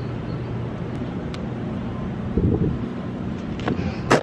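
Steady low outdoor rumble, with a short louder burst about two and a half seconds in.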